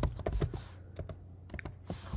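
Computer keyboard typing: a quick series of separate key clicks as a short word is typed.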